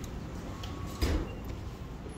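Automatic sliding glass entrance doors of a store, heard as someone walks through them: low steady background noise, with a single thump about a second in.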